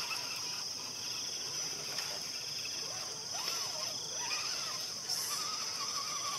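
Steady high-pitched insect drone, with faint rising and falling tones in the middle and a wavering tone near the end.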